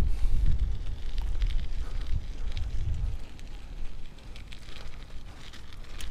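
Wind rumbling on the microphone of a camera riding on a bicycle, with faint crackles and ticks from the tyres on a wet, gritty road; the rumble eases about halfway through.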